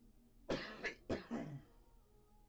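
A person coughing twice in quick succession, each cough starting suddenly.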